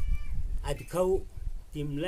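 A short, high-pitched animal call at the very start, a thin tone falling slightly in pitch and lasting about a third of a second.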